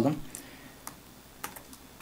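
A handful of separate keystrokes on a computer keyboard, sparse clicks spread out over a couple of seconds as a command is typed into a terminal.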